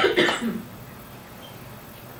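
A person coughing twice in quick succession near the start.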